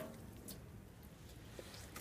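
A hose spray shuts off at the very start, leaving faint wet handling sounds with a couple of soft clicks, about half a second and a second and a half in.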